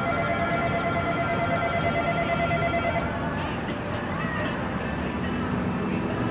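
Outdoor city ambience with distant voices; a steady electronic tone with overtones holds for about the first three seconds, then stops, followed by a few short sharp sounds.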